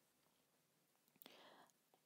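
Near silence, with a faint mouth click and a short, soft breath a little over a second in.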